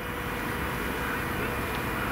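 Steady outdoor background noise in a pause between speech: a low rumble under an even hiss, with nothing sudden.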